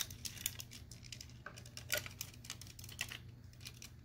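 Plastic parts of a Transformers Generations Skullgrin action figure clicking and clacking as they are rotated and pushed into place: a scattering of light, irregular clicks over a faint steady low hum.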